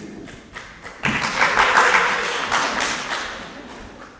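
Audience applause that breaks out about a second in, peaks and dies away over two or three seconds, after a few scattered taps.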